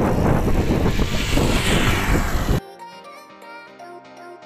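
Wind rushing over the microphone of a camera riding on a moving bicycle, which cuts off abruptly a little past halfway through to quieter background music.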